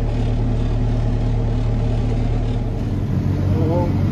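Fendt 714 tractor's six-cylinder diesel engine running steadily under load, heard from inside the cab while it pulls a field roller. About three seconds in, its note shifts and grows a little louder.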